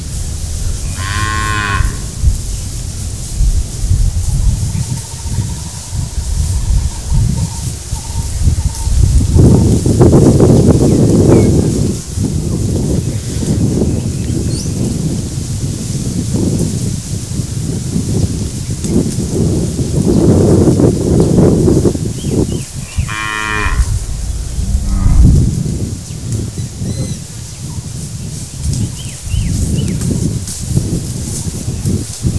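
Cattle mooing twice: short calls about a second and a half in and again about 23 seconds in, over a constant low rumble with louder noisy stretches around 10 and 21 seconds.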